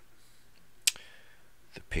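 A computer mouse clicked once, a single sharp click a little under a second in, with a couple of fainter clicks just before the end.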